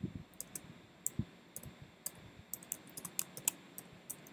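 Computer keyboard being typed on: a run of light, irregular key clicks as a file name is entered.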